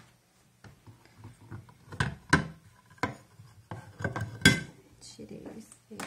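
A glass mirror being worked out of a wooden picture frame: a series of sharp clicks and knocks of glass against wood and the tabletop, the loudest about four and a half seconds in.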